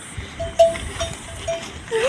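A livestock bell on grazing animals clinking repeatedly at one pitch, with short quick notes about four a second. A short rising sound follows near the end.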